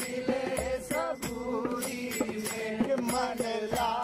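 Devotional Indian singing in a chanting style over a steady drone, with light percussion.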